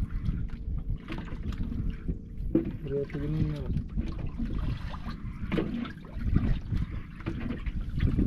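Water sloshing against the hull of a small wooden outrigger boat, mixed with wind buffeting the microphone. The result is an uneven low rumble with irregular surges.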